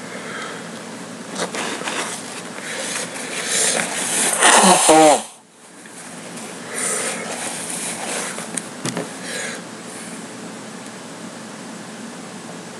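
A man blowing his nose hard into a tissue: a long blow that builds to its loudest and ends in a falling honk about five seconds in, followed by a few quieter blows and sniffs. His nose is running from the heat of a hot chili pepper.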